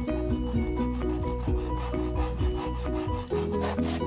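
Background music, a melodic tune over a steady bass, over a handsaw cutting through a dry bamboo pole. The rasping back-and-forth saw strokes come through more plainly near the end.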